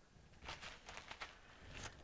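Faint, soft rustles and light taps of hands working in a plastic zipper bag, sprinkling powder onto a glue-coated candle. The rustles start about half a second in.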